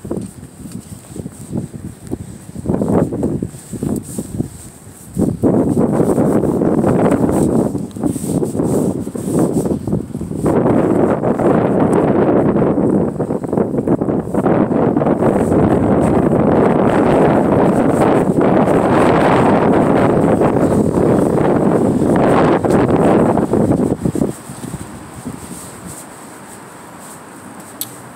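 Loud, rough noise on a phone microphone, buffeted by wind and rubbed by handling. It comes in short bursts at first, then runs almost unbroken from about five seconds in until a few seconds before the end.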